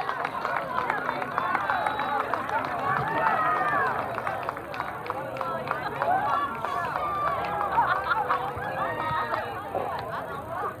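Many overlapping voices of soccer spectators and players calling out and chattering, none of the words clear, at a fairly steady level.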